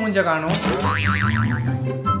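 A cartoon-style boing sound effect, its pitch wobbling rapidly about a second in, over background music with a steady low bass line.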